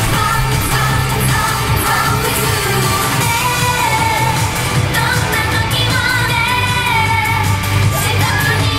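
J-pop dance song played loud through a stage PA: female group vocals over a backing track with a heavy, steady bass beat.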